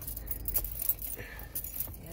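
A car protectant wipe rubbing and scrubbing over a Toyota's steering wheel and steering column, a scratchy rustling that comes in short bursts, with light handling clicks.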